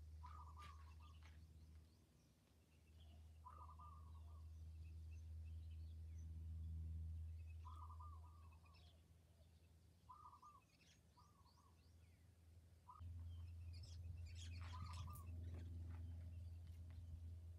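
Faint outdoor ambience of small birds chirping: short chirps repeated every second or two, with a few higher calls, over a steady low hum.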